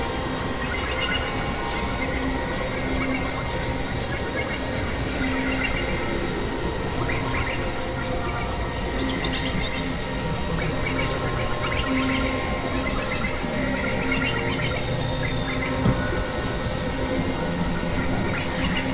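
Experimental electronic noise music from synthesizers: a dense, noisy drone with steady held tones and scattered chirping blips. A chirpy flurry comes about nine seconds in, followed by a slow rising whistle-like glide, and a single sharp click near the end.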